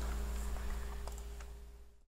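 A low, steady electrical hum that fades away gradually and drops out to silence at the very end.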